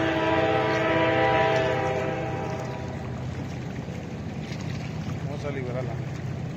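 A horn sounding one long steady chord of several tones, the loudest thing here, dying away about halfway through. A steady low rumble runs underneath.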